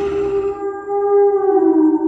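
Sound effect of an animated logo sting: a held, siren-like synthesized tone with overtones that settles after a short upward glide and splits into two close pitches near the end.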